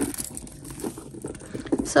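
Hands handling a black leather shoulder strap and the leather handbag it hangs on: a soft rustling with many small irregular clicks.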